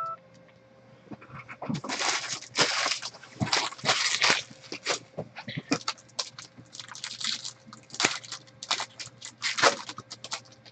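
Foil trading-card pack wrappers crinkling and rustling in irregular bursts as they are gathered up and handled.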